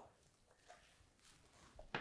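Near silence: room tone, with a faint soft tick about a second and a half in.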